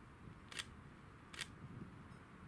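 Two short, sharp clicks, a little under a second apart, over a faint low background rumble.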